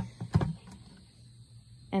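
Lid of a five-gallon plastic bucket pulled off. There are two brief plastic knocks about half a second apart, the second with a dull thump.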